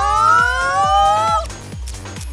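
A smooth rising electronic tone, a cartoon sound effect for a progress bar filling, cuts off about one and a half seconds in. Underneath it, electronic background music with a steady beat.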